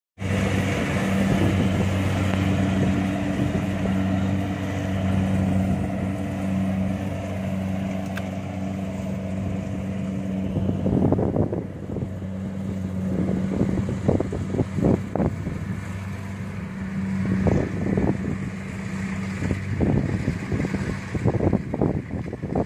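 Kubota combine harvester's diesel engine running at a steady speed as it works through a rice paddy. From about halfway through, wind buffets the microphone in irregular gusts over the fainter engine.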